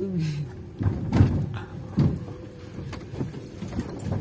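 Car bumping over potholes on a rough dirt road, heard inside the cabin: suspension thuds and interior rattles over a low rumble, with the biggest jolts about a second in and at two seconds.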